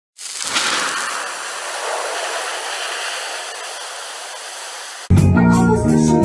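A hiss of noise with no low end comes in sharply and fades slowly for about five seconds. About five seconds in, a live rock band cuts in loudly: electric guitar, bass guitar and drums.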